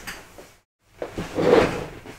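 Handling noise from someone moving close to the microphone: a few light knocks and a louder rustling shuffle about a second in.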